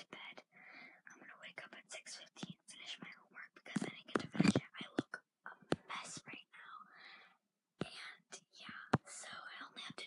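A girl whispering rapidly, close to the microphone.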